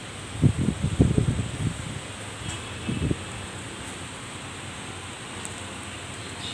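Wind buffeting the phone microphone in a few low rumbling gusts, first about half a second in and again around three seconds, over a steady outdoor hiss.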